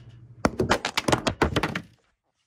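A quick run of about a dozen knocks and thumps as the recording camera is picked up and handled, starting about half a second in and stopping just before the end, over a faint low hum.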